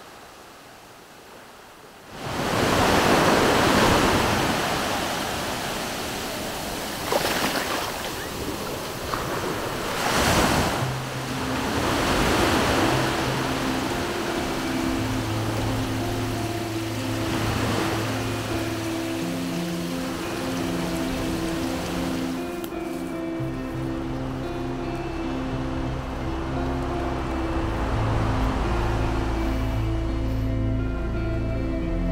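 Ocean waves breaking on a shore, in several rushing surges. Background music with steady repeated notes fades in about ten seconds in, and a bass line joins it soon after.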